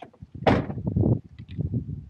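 A vehicle door shut about half a second in, a sudden loud thud followed by a second of low rumbling and knocking.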